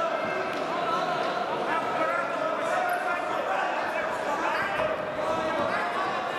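Echoing sports-hall crowd noise: many voices talking and calling out at once, steady throughout.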